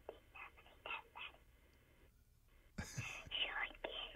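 Quiet speech of a young girl heard over a telephone line, with a short pause about two seconds in.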